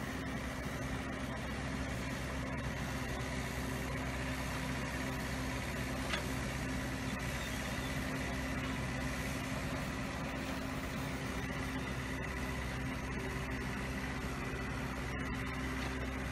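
Engine of land-levelling machinery running steadily at an even speed, with one brief click about six seconds in.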